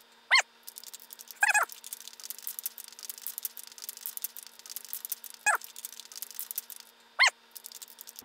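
Aerosol spray paint can being shaken, its mixing ball rattling in quick, fine clicks. Four short high-pitched yelps come through: one just after the start, one at about a second and a half, and two near the end.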